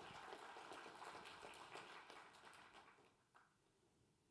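Audience applauding, faint and dense, dying away about three seconds in.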